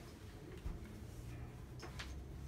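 A few faint, sharp clicks of small objects being handled over a low room hum, one about two-thirds of a second in and a sharper one near the end.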